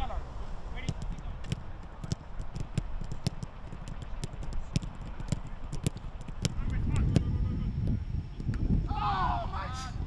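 Footballs being kicked in a passing drill: an irregular run of sharp knocks, several a second, with wind rumble on the microphone later and a voice calling near the end.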